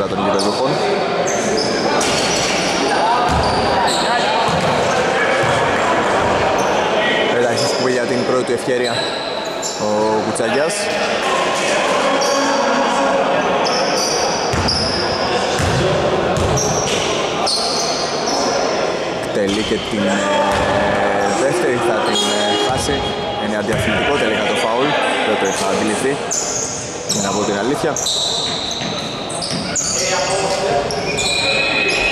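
Basketball bouncing on a wooden court, with short sneaker squeaks and players' voices ringing around a large sports hall.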